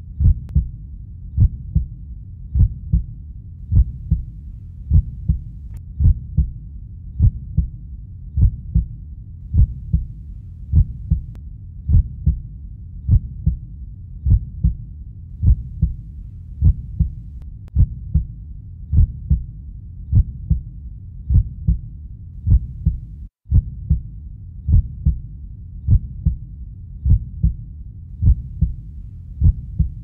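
Heartbeat sound effect: a steady lub-dub of low double thumps, a little faster than one a second, over a low rumble, with one very brief dropout about two-thirds of the way through.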